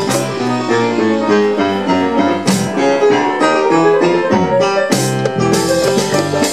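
Live band playing a Latin jazz-salsa groove, with a piano solo on a stage keyboard over electric bass, drums and percussion.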